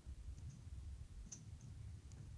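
A few faint, sharp clicks of a stylus tapping on a tablet screen, the clearest just past the middle, over a steady low room rumble.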